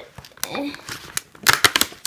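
Cardboard door of a chocolate advent calendar being pried and torn open, with the plastic tray inside crinkling; a quick run of sharp crackles and snaps comes about a second and a half in.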